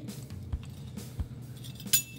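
Soft background music, with a few light clicks of a metal measuring spoon against a small glass bowl and one sharper clink near the end.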